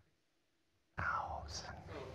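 About a second in, after near silence, a soft, breathy human voice: a quiet whispered utterance.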